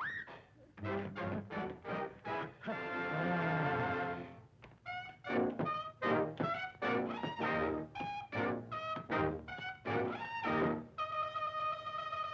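Jazz band brass section on an early-1930s cartoon soundtrack, playing short stabbing chords with a held, wavering chord about three seconds in and another long held chord near the end, leading into a song.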